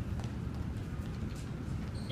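A child's shoes making a few light clip-clop clicks on a hard tile floor over a steady low rumble of room noise.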